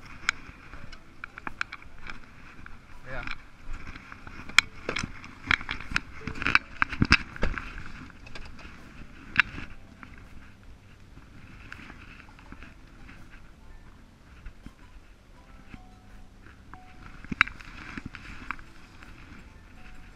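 Irregular sharp metallic clicks and knocks from working a boat trailer's bow winch and its hardware, loudest and thickest in the first half, then thinning to a few scattered clicks.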